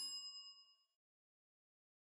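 A bell-like chime rings out with several clear tones and fades away under a second in, leaving silence.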